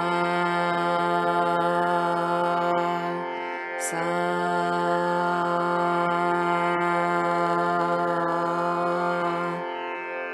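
A woman's voice holding the tonic note Sa over the steady drone of an electronic raagmala machine pitched in F. The note is held twice, broken by a short breath about three and a half seconds in.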